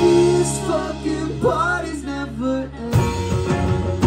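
Live rock band in a breakdown: the drums drop out while guitars and bass hold a steady chord and a voice sings a short sliding run. About three seconds in, the drums and full band come back in.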